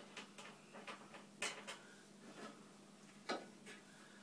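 Scattered light clicks and taps of an electric water heater's sheet-metal access cover being worked loose and lifted off. Two sharper clicks stand out, one in the first half and one near the end, over a faint steady hum.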